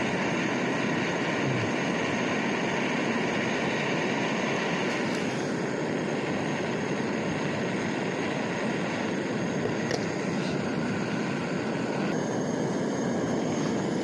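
Handheld butane gas torch burning steadily with a rushing hiss, its flame played on the side of an aluminium camping kettle to heat the water, which is just starting to boil.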